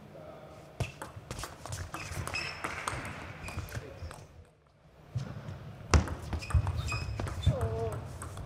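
Table tennis rally play: the ball clicking off bats and the table in quick runs of hits, with a pause about halfway, and shoes squeaking on the court floor. A short voice or shout comes near the end.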